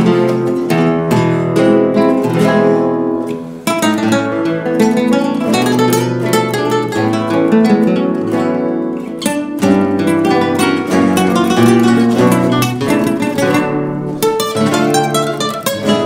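Instrumental tango played on three acoustic guitars, with plucked melody and chords, and a short break between phrases a little under four seconds in.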